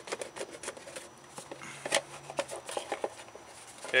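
Pocket knife cutting around a plastic motor-oil jug: irregular small clicks and crackles as the plastic gives way under the blade.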